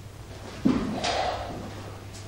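An office chair scrapes and creaks as someone gets up from a desk, with a sudden start about two-thirds of a second in, followed by a brief rustle of movement. A faint steady hum lies underneath.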